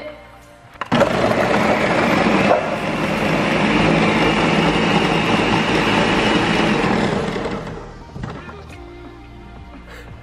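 Ninja countertop blender starting on low about a second in and running for about six seconds, chopping up a slime-filled Wubble ball into green liquid. It then winds down.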